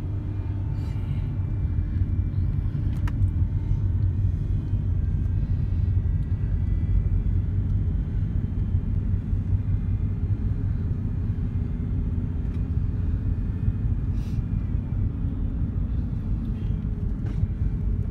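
Steady low rumble of a car driving on the road, with tyre and engine noise heard from inside the cabin.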